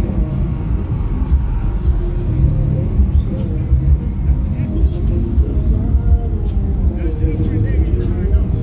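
Deep bass from car-audio subwoofers playing loud, heavy and uneven in the low end, with faint voices behind it.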